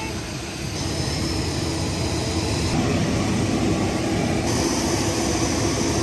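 Steady jet aircraft engine noise: a continuous rumble with a faint high whine that shifts a couple of times.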